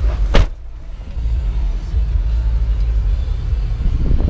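Low, steady rumble of a 2007 Chevrolet Tahoe's 5.3-litre V8 idling, heard from inside the cabin, with one sharp knock about a third of a second in.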